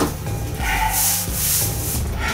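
Hands gripping and shifting a large cardboard shipping box on a tabletop, a hissing rubbing noise of cardboard for about a second in the middle, over a steady background music bed.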